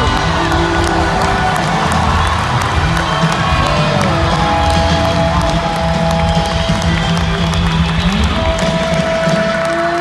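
Live rock band in a stadium, with electric guitar holding long notes that bend in pitch over a steady low end, and a large crowd cheering.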